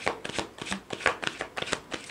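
A tarot deck being shuffled by hand: a quick, irregular run of card clicks and snaps.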